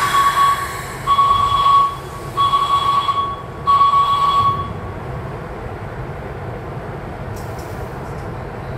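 Four long electronic beeps of one steady pitch, each about a second long with short gaps, stopping about five seconds in, over the low rumble of a train standing at the platform.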